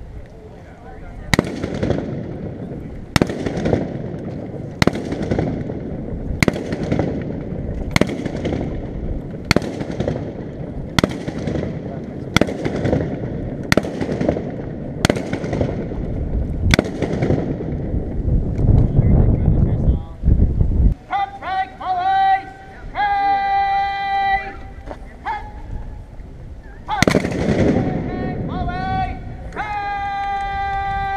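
Musket shots fired one after another, about every second and a half, each echoing off the surrounding stone walls. Then come shouted drill commands with long drawn-out words, and one more shot near the end.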